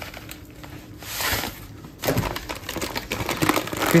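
Rolled oats pour from a bag into a plastic blender cup in a short rush about a second in. Then the oats bag crinkles and rustles in quick little clicks as it is folded shut.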